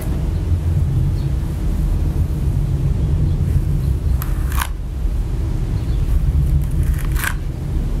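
Steady low rumble of background noise, with two short hissing sounds, one about four seconds in and one near seven seconds.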